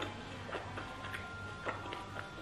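Close-miked chewing of roast pork: a run of short, sharp wet mouth clicks, roughly two a second, over a low steady hum.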